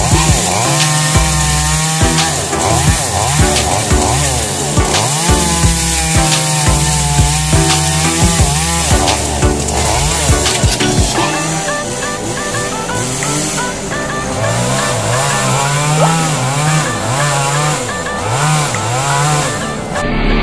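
Chainsaw cutting into a coconut palm trunk, its engine pitch rising and falling again and again as it bites and eases off.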